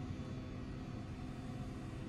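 Steady low background hum of the room tone, with no distinct events.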